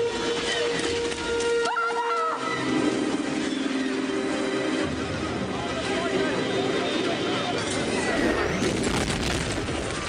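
Film battle soundtrack: an orchestral score mixed with explosions and blaster fire.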